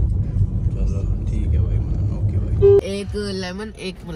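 Low rumble of a car's engine heard inside the cabin. About three seconds in, a sharp knock cuts in and a voice follows.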